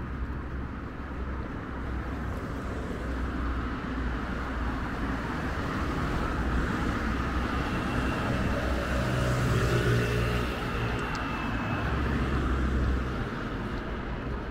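Street traffic with a car driving past, its engine and tyre noise building to a peak then easing off near the end, over a steady low rumble.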